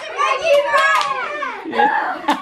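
Several children's voices cheering and shouting excitedly together, pitch sliding up and down, dropping away near the end.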